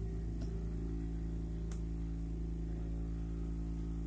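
Hot-air rework gun running steadily over a phone circuit board, a constant low hum with a few faint ticks.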